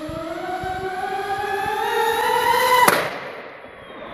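RC hovercraft's motor and propeller whining, rising steadily in pitch as it speeds up, then a sharp crash about three seconds in as it hits the wall, after which the whine dies away.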